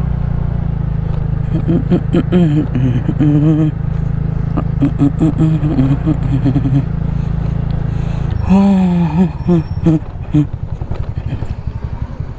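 Small motor scooter engine running at low road speed, with a person's voice heard over it at times. About eight and a half seconds in, the engine note drops to an uneven, pulsing putter as the scooter slows.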